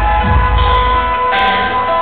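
Loud live music through a concert PA: a pounding bass beat under several sustained high tones, heard from the audience.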